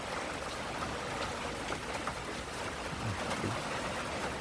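Steady rain falling, an even hiss of water with no breaks.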